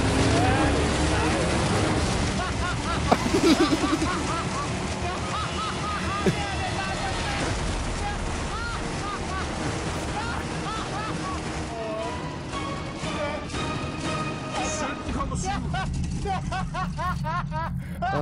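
A large engine-driven wind machine fan running, a steady rumble and rush of air blasting a pop-up tent.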